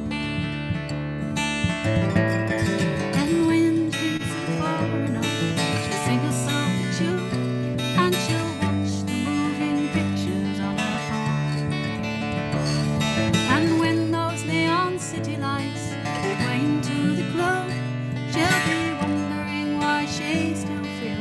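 Live folk song: an acoustic guitar strummed steadily with a woman singing over it.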